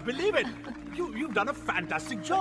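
Speech: voices talking, with a steady low tone underneath.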